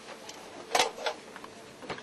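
A few sharp knocks and clanks of boots and gear against the metal troop compartment of an armoured vehicle as a Marine climbs out through the rear hatch. The loudest is about three-quarters of a second in, with a smaller one just after and another just before the end.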